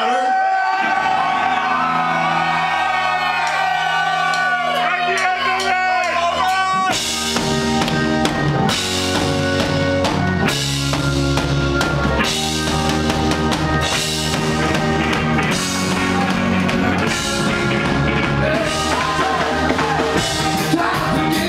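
A live reggae band playing. For about the first seven seconds a chord is held with voices wavering over it. Then drums and bass come in and the full band plays a steady upbeat groove.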